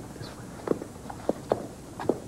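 Footsteps on a hard floor: a few short, sharp steps.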